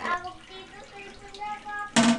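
Water running into a toilet cistern as it refills after a flush, through a newly replaced flapper. Near the end, a toilet lid is shut with one sharp, loud clack.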